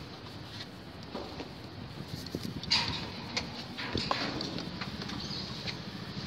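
Small river ferry boat under way: a low steady rumble with a few scattered light knocks and clicks from around the boat.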